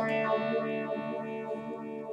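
Electric guitar chord struck at the start and left ringing through effects, its notes pulsing evenly with tremolo as they slowly fade.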